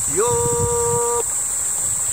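A man singing unaccompanied, holding one long steady note on the word "you" for about a second, then breaking off. A steady high insect chorus runs underneath.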